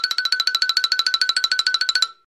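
Cartoon sound effect: a rapid trill of short pitched notes, about twelve a second, alternating between two close pitches at a steady level, then stopping abruptly.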